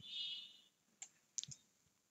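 A few faint, spaced-out computer keyboard key clicks as text is typed and deleted. The loudest sound is a brief faint high-pitched whine in the first half second.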